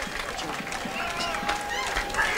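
Audience chatter: many indistinct voices talking over one another, with no music playing.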